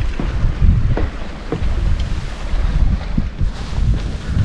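Wind buffeting the camera microphone: an uneven low rumble, with a few faint knocks through it.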